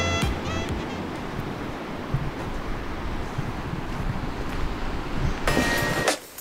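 Ocean surf washing on a beach, a steady rushing noise. Music fades out at the start and returns near the end.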